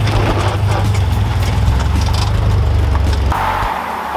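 Honda Integra's engine running as the car moves on a driveway, a steady low rumble that cuts off abruptly a little over three seconds in.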